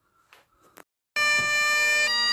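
Great Highland bagpipe starting abruptly about a second in, its drones and chanter sounding together on one held note, loud and steady. Before it there are only a couple of faint clicks.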